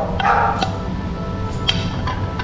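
Background music with steady tones, under a few light clicks of a spoon against a ceramic plate and bowl.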